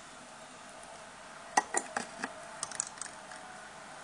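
Series of small sharp clicks and taps, one cluster about a second and a half in and a few more near three seconds, from hands handling the fly-tying vise and hook while deer hair is worked onto the shank.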